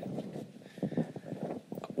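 Handheld microphone being handled as it is passed to a reporter: a run of irregular soft knocks and rustling.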